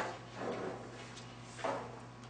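Sheets of paper rustling as pages are handled and turned, in three short bursts.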